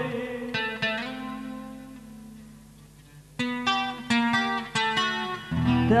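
Acoustic guitar played alone between sung lines: two plucked notes ring out and fade almost to quiet, then a run of single picked notes. A strummed chord and the singing voice come back in near the end.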